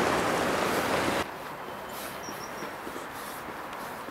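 Loud steady rushing outdoor noise that cuts off abruptly just over a second in, giving way to much quieter open-air ambience with faint soft steps and one brief high chirp.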